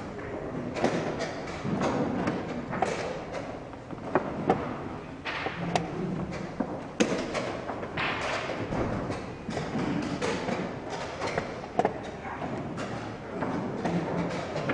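Chess pieces set down hard on a board and a chess clock being hit during fast play: irregular sharp knocks, a few louder than the rest, over steady room noise.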